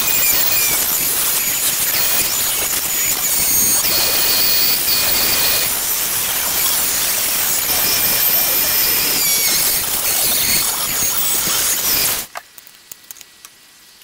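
Dremel rotary tool with a cut-off disc running at high speed and cutting a hole in a model plane's engine cowl: a loud, harsh grinding over a high whine. It stops about twelve seconds in.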